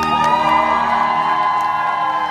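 Audience cheering and whooping, many high voices rising in pitch together, over the last held notes of the song's accompaniment.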